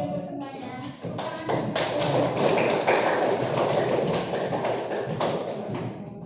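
A class of students clapping and calling out in a classroom clapping game, with many quick claps and taps mixed with voices.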